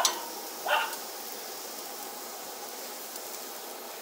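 Food sizzling steadily on a hot gas barbecue grill while roasted red peppers are lifted off with tongs, with two brief, sharp sounds in the first second.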